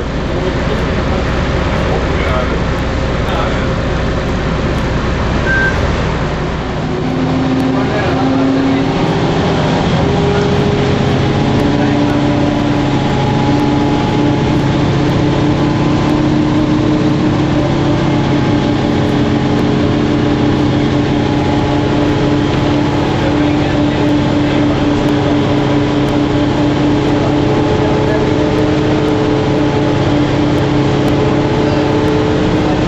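City bus running, heard from inside: a deep engine rumble at first, then about seven seconds in the bus pulls away. The engine and drivetrain step up in pitch and settle into a steady whining drone as it drives on.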